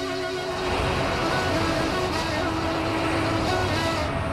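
Road traffic on a busy city street, cars passing steadily, heard under background music.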